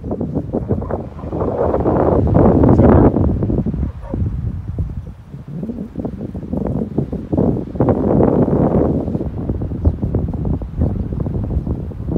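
Wind buffeting the microphone, a loud low rumble that gusts up twice, about two seconds in and again near the end.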